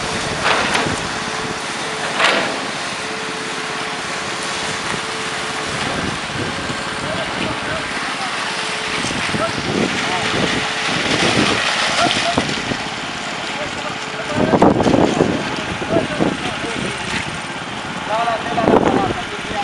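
Construction-site noise during a wet concrete pour: a machine running steadily with a faint hum through the first half, and workers' voices calling out several times in the second half.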